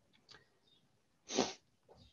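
A single short burst of a person's breath noise at the microphone, about a second and a half in, amid faint room tone.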